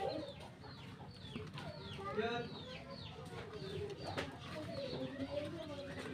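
Background birds chirping in many short, downward-sliding notes, with faint voices behind.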